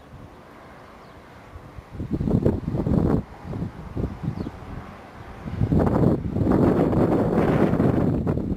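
Wind buffeting the microphone in gusts: fairly quiet for the first two seconds, then a gust lasting about a second, and a longer, louder spell of buffeting from a little past halfway on.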